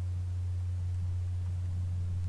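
A steady low electrical hum, one deep unchanging tone, with a faint hiss over it.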